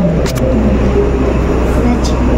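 A steady low rumble of indoor background noise, with faint voices in the background.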